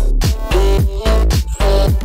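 Loud electronic bass music playing back from the producer's own track: heavy low bass with repeated hits that drop sharply in pitch, about three a second, under pitched synth parts.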